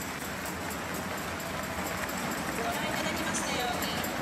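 Tennis crowd applauding steadily after the match-winning point, with a few voices calling out in the crowd.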